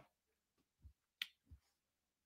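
Near silence, with a single brief, faint click a little over a second in.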